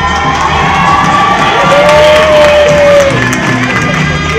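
Recorded music playing for a dance routine while the audience cheers and shouts, with a long held high note near the middle, where it is loudest.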